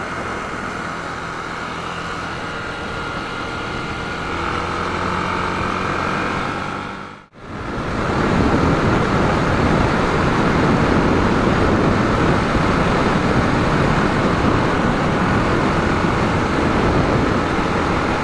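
Yamaha YB125SP's 125 cc single-cylinder engine running at a steady cruise, with wind and road noise on the microphone. About seven seconds in, the sound drops out for a moment, then returns louder, with the wind and road noise heavier over the engine.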